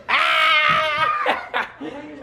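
Loud, high-pitched laughter: one long wavering laugh lasting about a second, then short bursts.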